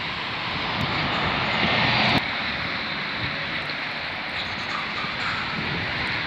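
Road traffic on a busy street: a vehicle passes close, its noise building to a peak and cutting off sharply about two seconds in, then steady traffic noise.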